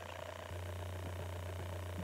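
Low steady hum with faint room tone, growing slightly louder about half a second in.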